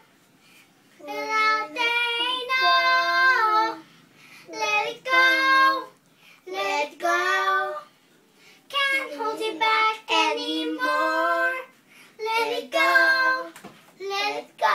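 A girl and a boy singing a song together without accompaniment, in sung phrases separated by short pauses; for a moment about two-thirds of the way through, two voices overlap.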